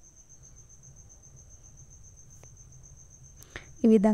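A steady, high-pitched insect trill, finely pulsing without a break, over a faint low background hum.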